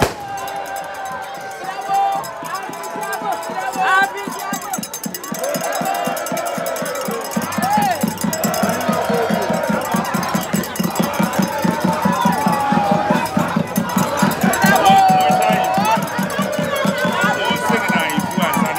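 A small hand-held drum beaten in a fast, steady rhythm that grows louder about seven seconds in, over a street crowd calling and chanting.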